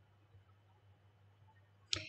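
Near silence: room tone with a faint steady low hum, and a brief click near the end.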